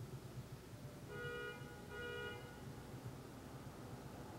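Two short honks of a two-tone car horn, each about half a second long and less than a second apart, faint over quiet room noise.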